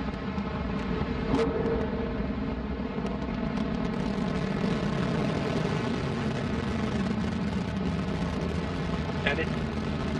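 Antares rocket's first-stage engines at full thrust, heard from a distance as a steady, deep rumble as the rocket climbs.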